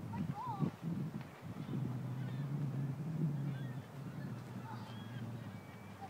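Birds outdoors give a few short, bending calls, one about half a second in and several more through the middle and latter part, over a low steady hum.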